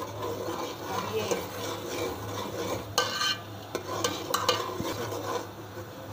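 Metal ladle stirring a thick masala paste frying in oil in a metal pot, with a low sizzle; sharper scrapes and clinks of the ladle against the pot come about three and four seconds in.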